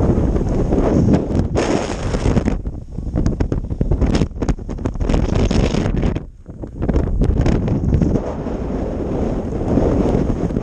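Strong wind buffeting the microphone in gusts. It briefly turns to a brighter hiss for about a second near two seconds in, and there is a short lull a little after six seconds.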